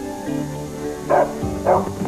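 Background music with two bullmastiff barks, the first a little over a second in and the second about half a second later.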